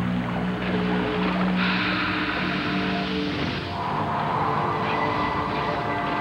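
Dramatic background score of sustained synthesizer notes that change pitch a few times. A rushing, whooshing wash comes in about a second and a half in and lasts about two seconds.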